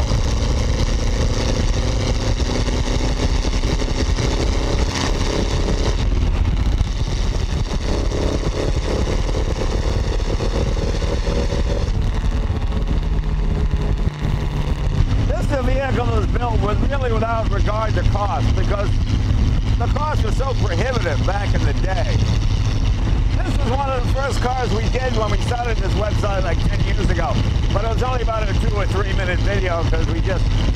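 1931 Duesenberg Model J's twin-cam straight-eight engine pulling the bare chassis along the road. Its pitch rises, drops back about six seconds in, rises again, then holds steady at cruise. An indistinct voice is heard over it in the second half.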